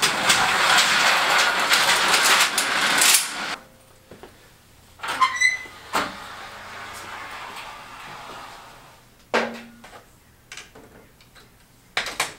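Steel folding scissor-type security gate rattling and clattering for about three and a half seconds as it is pushed open, followed a few seconds later by separate single knocks.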